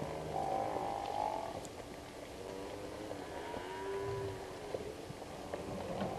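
Cape buffalo lowing: a moo-like call about half a second in, then a lower, longer one around three to four seconds in.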